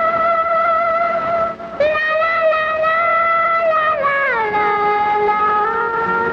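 A woman's high singing voice holding long wordless notes with vibrato, with a short break for breath near two seconds in, then sliding down to a lower held note about four seconds in.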